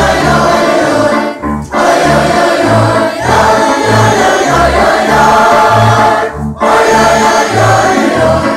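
Mixed choir of children and adults singing a Yiddish folk song together, over an upright bass plucking a steady low line. The singing breaks briefly between phrases about a second and a half and six and a half seconds in.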